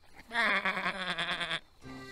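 A cartoon sheep bleating once: a single wavering 'baa' of a little over a second.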